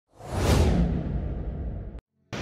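Whoosh sound effect of a news channel's logo intro: a rush that swells up within about half a second, then fades with its hiss sinking in pitch over a deep rumble, cutting off abruptly at the end.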